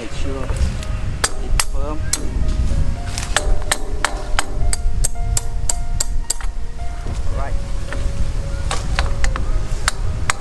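Background music with a run of sharp taps and knocks, several a second in places, from hands and a tool working on plastic PVC water-pipe fittings.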